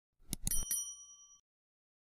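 Subscribe-button animation sound effect: a few quick mouse clicks, then a short, bright notification-bell ding that rings for about a second before fading out.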